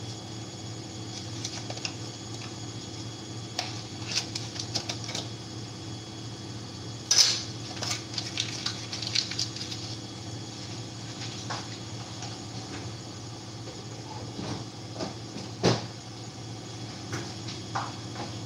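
Pots and utensils knocking and clinking at a gas stove: scattered small clicks, with a sharper knock about seven seconds in and another near the end. A steady low hum runs underneath.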